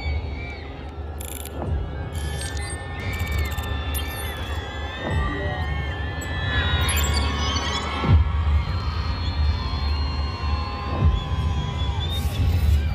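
Electronic stage-intro soundtrack over a PA: a deep, pulsing bass drone with a falling sweep about every three seconds, four in all, and high gliding synth tones above.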